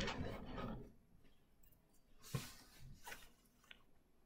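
Faint soft rustle of grated apple being dropped into a glass bowl of shredded cabbage and carrot about two seconds in, followed by a few light ticks.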